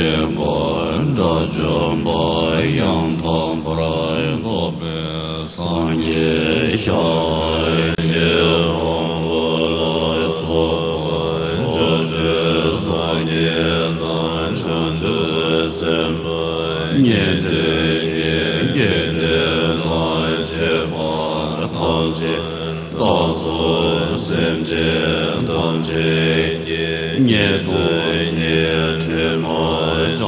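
Buddhist monks chanting an invitation liturgy in unison: a continuous low, droning recitation with slow rises and falls in pitch.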